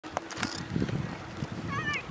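Distant murmur of people's voices on the frozen canal, with two sharp clicks in the first half second and a high wavering call, like a child's squeal, near the end.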